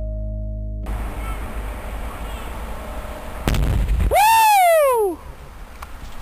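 Music fades out, giving way to outdoor ambience. About halfway through, a single sharp explosion blast goes off with a low rumble. It is followed at once by a loud yell that falls in pitch for about a second.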